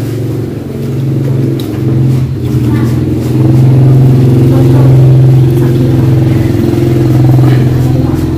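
A motor vehicle engine running steadily close by, growing louder about three seconds in and holding there.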